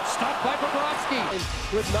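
Play-by-play hockey commentary over the noise of the game broadcast, with a few short clicks. A low bass music bed comes in about one and a half seconds in.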